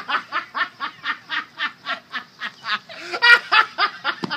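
A person laughing hard in a fast, even run of short 'ha' pulses, about five a second, with a louder burst of laughter near the end.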